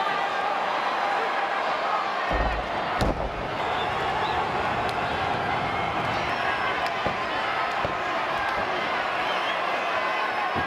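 Arena crowd shouting steadily, with a heavy slam of a wrestler's body onto the wrestling ring about two and a half seconds in, then a sharp knock half a second later.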